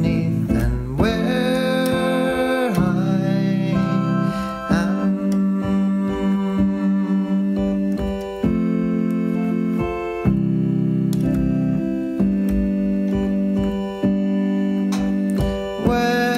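Music: an instrumental passage of a song, guitar with keyboard, playing long held chords that change about every two seconds.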